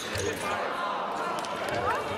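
Fencers' shoes squeaking and thudding on the piste as they move after a touch, with a few sharp clicks over voices and a steady murmur in the hall.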